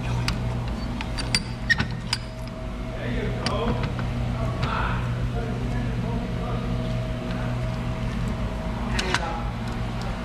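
Chain-type tailpipe cutter worked back and forth around a steel spin-on oil filter can clamped in a vise: its cutting wheels and chain links click and scrape against the metal, with several sharp clicks in the first couple of seconds and another near the end, over a steady low hum.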